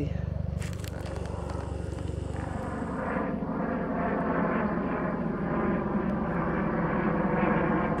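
Light helicopter flying overhead: a steady rotor and turbine drone that grows slowly louder as it comes closer.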